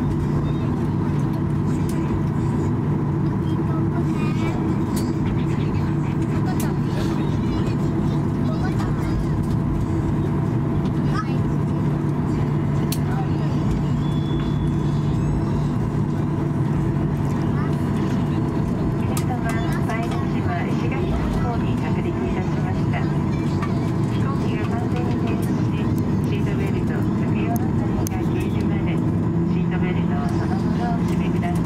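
Cabin noise of a Boeing 737-800 taxiing after landing: the steady hum of its CFM56-7B turbofans at idle, with several constant tones. Faint passenger voices come through now and then.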